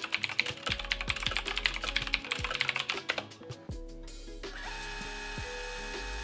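Typing on a computer keyboard: a quick, uneven run of keystrokes for about three and a half seconds. It gives way to a steady whirring hum for the last couple of seconds.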